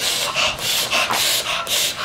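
Fingers scratching hard at shirt fabric to relieve an itch: a quick series of rasping scratches, about three a second.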